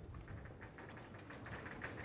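Faint room tone with soft, irregular ticks and shuffles: footsteps of a person walking across a lecture-hall floor.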